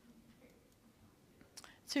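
Near silence in a pause in a woman's talk, then a faint breathy sound and her voice resuming near the end.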